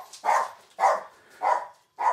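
A pet dog barking, about four evenly spaced barks, set off by a knock at the door.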